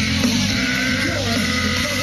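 Live rock band playing loudly, with a steady low end from bass and drums and wavering, bending pitched lines above it.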